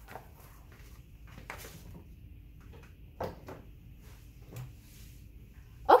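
Handling noises of a plastic ring binder being carried and set on an upright piano's music rack: scattered soft rustles and light knocks, the loudest knock about three seconds in. No piano is played.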